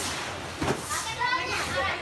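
Children's voices, high-pitched chatter and calls of children at play.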